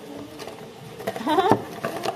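A short wordless vocal sound whose pitch wavers up and down, about a second in, over light clicks from coffee capsules being handled.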